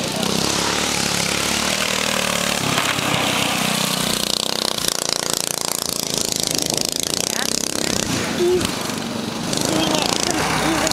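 A racing go-kart's small engine running as it laps a dirt track.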